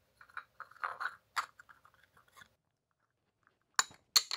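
Faint scraping and small clicks of a 3D-printed plastic test cap being pressed into an alloy wheel's center bore, then a single sharp click near the end. The prototype is too small for the bore and will not seat.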